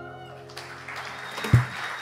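The band's last chord, acoustic guitars ringing, fades out, and audience applause starts about half a second in. A single loud, low thump comes about a second and a half in.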